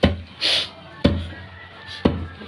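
Wooden pestle pounding unhusked glutinous rice in a wooden mortar to knock the husks off: two heavy thuds, one at the start and one about a second later, with a short hiss in between.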